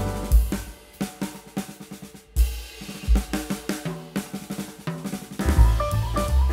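Instrumental background music carried by a drum kit playing a steady beat. The fuller band thins out through the middle, with a brief break a little past two seconds in, and comes back with heavy bass near the end.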